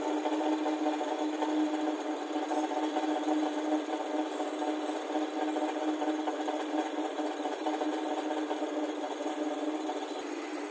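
Kawasaki 900 STS personal watercraft's three-cylinder two-stroke engine running steadily out of the water on a stand, smoke coming from its exhaust.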